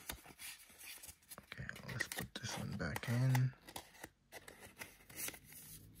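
Stiff paper cards and inserts being handled: light rustles, scuffs and small clicks as they are turned over and sorted. A brief hum or murmur from a man's voice comes about halfway through.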